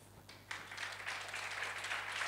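Audience applauding, faint at first and swelling gently, starting about half a second in.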